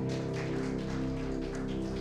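Electric keyboard holding soft sustained chords at the close of a gospel song, with a faint irregular crackling patter over them.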